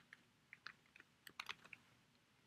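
Computer keyboard being typed on: about ten faint, quick, irregular key clicks as a single word is typed out.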